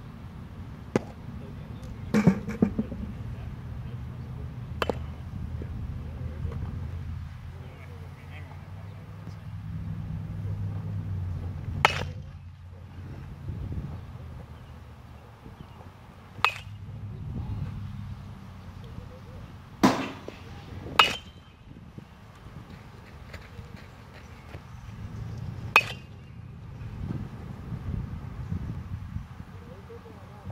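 Sharp single cracks of baseballs at home plate, pitches meeting an aluminum bat and popping into the catcher's mitt, about eight spread a few seconds apart over a low background murmur.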